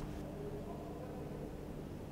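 Steady, fairly quiet background hiss with a faint low hum: the room tone of an empty cinema auditorium.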